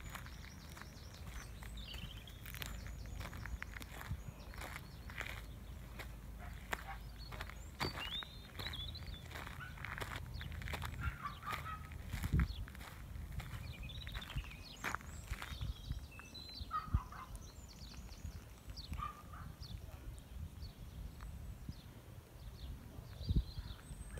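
Quiet outdoor ambience: scattered short bird calls with frequent light clicks and steps from the person walking with the camera, over a low steady rumble.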